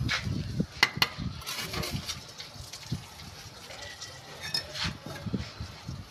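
Steel bricklaying trowel clinking against brick and scraping mortar as bricks are set into a mortar bed, with two sharp clinks about a second in and lighter taps after.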